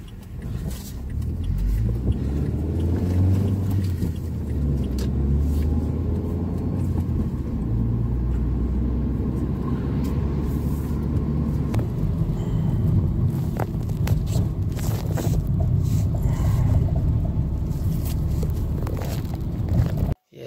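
A car's engine and road noise heard from inside the cabin while driving, a steady low rumble whose engine note shifts up and down in pitch as the speed changes, with a few short clicks and knocks.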